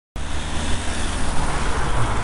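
Steady traffic noise of cars and vans on a wet road, heard from a moving bicycle with wind rushing over the camera microphone, starting abruptly just after the start. A car draws up close alongside near the end.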